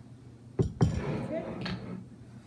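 Plastic ketchup bottle set down on a tabletop with two quick knocks about half a second in, followed by a brief wordless voice sound and another light knock near the end.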